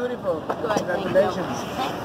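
People talking, with several voices overlapping.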